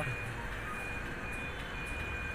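Steady background noise with a faint high electronic beep repeating in long pulses.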